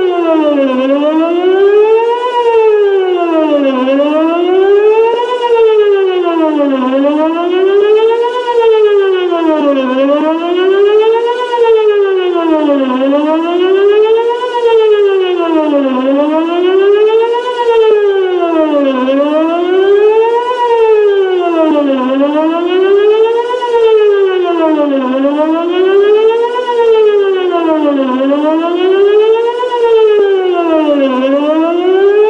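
Whelen WPS-2909 electronic outdoor warning siren sounding a wail during a siren test, its pitch rising and falling about every three seconds.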